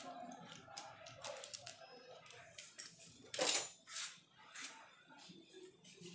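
Small metallic clicks and clinks of a 4 mm Allen key working the bolts of a bicycle stem faceplate, with one louder scrape about halfway through.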